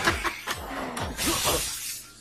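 Anime fight-scene sound effects: a loud crash with shattering debris over background music, fading out near the end.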